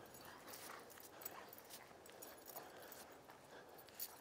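Faint, scattered crunching of footsteps in deep fresh snow as a person and a dog move about, with a few soft scuffs.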